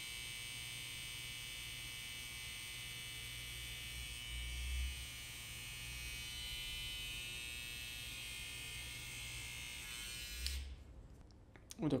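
Babyliss Skeleton FX cordless hair trimmer running steadily with a high buzz, freshly fitted with a new cam follower to quiet it, then switched off about ten and a half seconds in. A brief low bump about four and a half seconds in.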